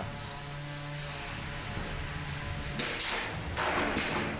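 Combat robot motors whining steadily in the arena, then a couple of harsh crashes about three seconds in as one robot is launched into the arena wall.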